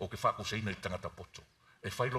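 A man's voice preaching, breaking off for about half a second past the midpoint before speaking again.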